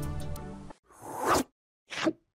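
Background music ending about three quarters of a second in, then a whoosh sound effect that swells and cuts off sharply, and a second, shorter swish at the very end, as a logo card appears.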